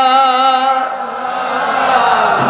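A man's voice chanting the salawat through a microphone and PA, holding one long, slightly wavering sung note that breaks off about a second in. Fainter, more diffuse chanting follows.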